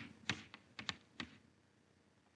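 Chalk tapping and scratching against a blackboard in about five short, faint strokes within the first second and a bit, as a word is written out.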